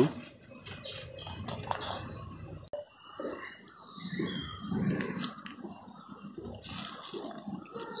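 Faint outdoor background: a high steady whine with low, indistinct rustling and murmuring, and a few faint high chirps. The whine stops abruptly about three seconds in at an edit.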